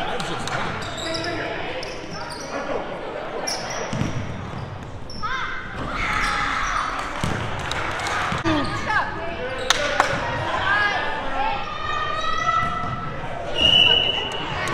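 Basketball game sounds in an echoing gym: a basketball bouncing on the hardwood floor, players and spectators calling out, and a few sharp knocks. A short, high steady tone sounds near the end.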